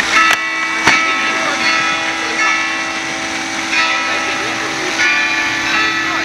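Church bells ringing, a layered peal of held, overlapping tones that shifts in pitch about five seconds in. Two sharp skateboard clacks come within the first second: the tail hitting the ground on the pop, then the landing.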